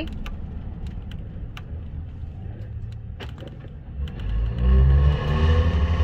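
Tour bus engine running low and steady with a few light rattles and clicks, then accelerating from about four seconds in, its rumble growing louder and rising in pitch.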